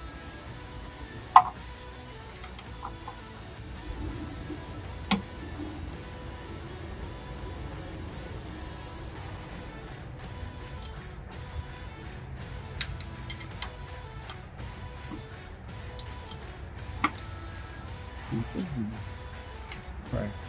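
A few sharp metallic clicks and clinks of a wrench on the fuel-line fittings of a 2.4 Ecotec engine's high-pressure fuel pump, the loudest about a second in, over steady background music.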